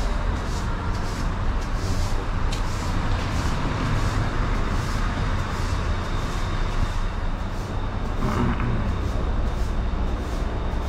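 Steady low street rumble of passing traffic, with the walker's footsteps about twice a second and a brief distant voice near the end.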